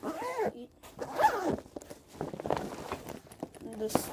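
Zipper on a Wilson tennis bag pocket being pulled, in a run of short rasping strokes, with the bag's fabric rustling as it is handled.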